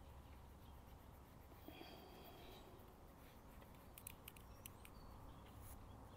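Near silence: faint outdoor ambience with a low hum. A faint high chirp comes about two seconds in, and a few small sharp clicks fall in the last two seconds.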